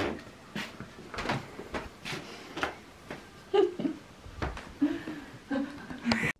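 Small boxes knocking and clattering as they are handled on a wooden shelf unit: a string of light knocks, about two a second.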